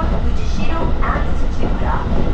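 Inside the carriage of an electric commuter train running along the line: a steady, loud low rumble from the wheels and running gear, with a voice heard over it.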